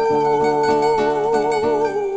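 Music: a female singer holds one long note, with vibrato coming in near the end, over plucked guitar accompaniment.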